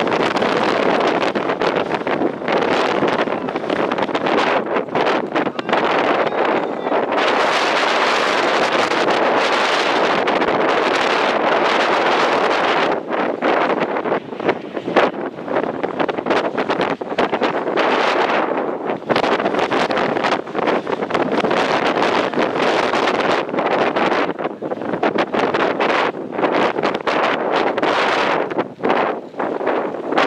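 Wind buffeting the camera microphone: a loud, continuous rush that swells and drops in gusts.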